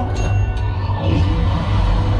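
Train-ride attraction soundtrack: music playing over a steady deep rumble, with a couple of clicks in the first half-second.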